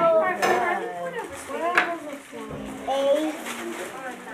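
Children's voices talking at a table, with a single sharp clink of hard objects knocking together about halfway through.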